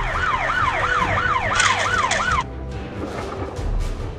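Police siren sound effect in a fast yelp, rising and falling about three times a second, cutting off suddenly about two and a half seconds in.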